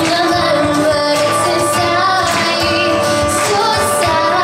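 A woman singing a song live, accompanying herself on a strummed steel-string acoustic guitar.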